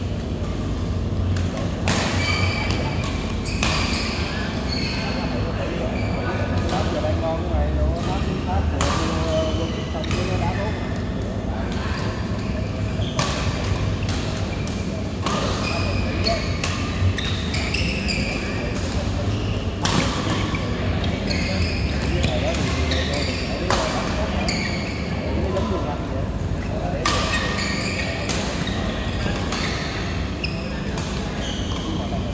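Badminton rackets hitting a shuttlecock during a doubles rally in a large indoor hall: sharp hits every one to three seconds, at an uneven pace.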